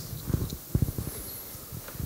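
Microphone handling noise: a run of soft, irregular low bumps and knocks as a microphone is moved and handled.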